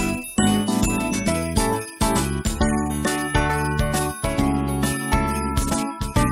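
Background music: a melody of quick struck notes that ring and fade, over a steady bass line.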